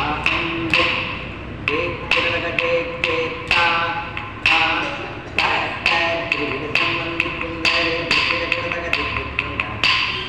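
Carnatic dance accompaniment for a Kuchipudi kauthwam in raga Nata, Adi tala: sharp percussion strokes about two or three times a second over held melodic tones.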